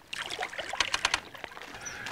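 Water splashing and dripping close by, a quick run of short splashes and clicks.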